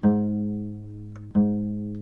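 A low note plucked on a string instrument, struck twice about a second and a half apart, each ringing out and slowly fading.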